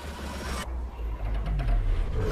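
Action-film trailer soundtrack playing back: a deep, steady low rumble, the high end dropping away early and a tone sliding downward near the end.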